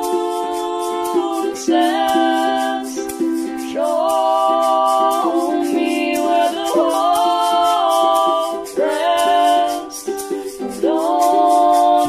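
A singer holding long, sliding notes over a steady chordal accompaniment, with a fast, even ticking in the high end.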